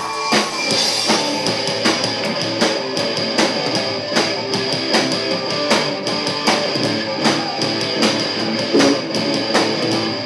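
Live rock band playing an instrumental passage: electric guitar, keyboard and drum kit, with drums keeping a steady beat.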